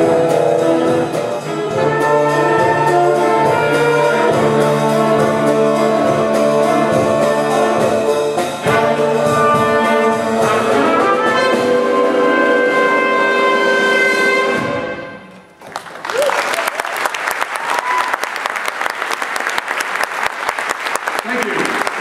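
A mixed ensemble of brass, strings and woodwinds, trumpet prominent, plays sustained chords over a steady bass pulse to the end of a piece, fading out about fifteen seconds in. The audience then applauds.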